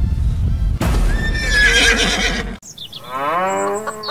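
A horse whinnies, a wavering high call about a second in, over background music. The sound cuts off abruptly about two and a half seconds in, and a different pitched, gliding sound begins near the end.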